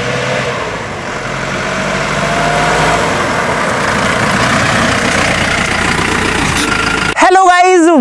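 Mahindra Scorpio SUV driving up and approaching, its engine and tyre noise growing louder, with the engine pitch rising slightly in the first few seconds.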